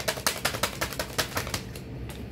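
A deck of tarot cards being shuffled by hand: a quick run of light card slaps, about seven a second, slowing and fading toward the end.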